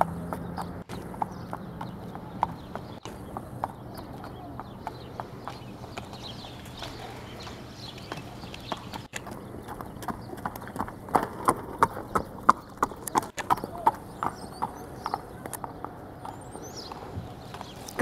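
A horse's hooves clip-clopping on pavement at a walk, an even run of hoofbeats, louder for a few seconds past the middle as the horse comes close.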